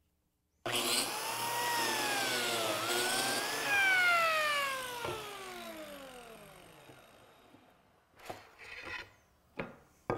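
Porter-Cable biscuit joiner switched on about half a second in, its motor whine rising as it spins up, dipping in pitch as the blade plunges into the wood to cut a biscuit slot, then falling in a long winding-down whine after it is switched off. A few clicks near the end.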